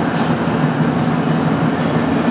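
Steady, loud background noise with no speech: a low hum with hiss over it, unchanging throughout.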